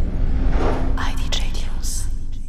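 Record label's audio logo sting. A deep, rumbling hit carries on under a steady low hum, with noisy sweeps rising into the highs about a second in.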